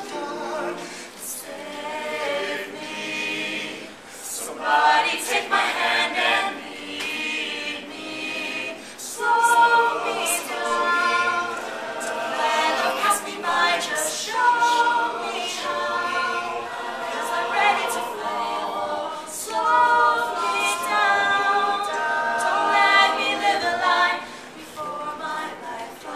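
Mixed-voice a cappella group singing a pop arrangement in close harmony, with a male lead voice over the backing voices.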